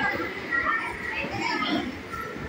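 Indistinct chatter of children and other voices in a hall, quieter and broken up after a loud voice over the microphone stops at the start.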